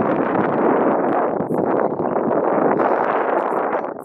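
Strong wind buffeting the camera's microphone: a loud, steady rushing roar.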